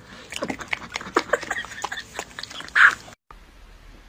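A dog chewing a honey bun: a quick, irregular run of loud smacking chews. It cuts off suddenly about three seconds in.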